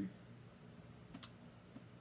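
Faint handling noise as a piece of cross-stitch fabric is picked up, with a soft click a little before the middle and another about a second in, over low room tone.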